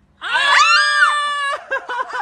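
A woman's excited high-pitched scream, rising and then falling in pitch over about a second, breaking into a rapid wavering, warbling cry near the end.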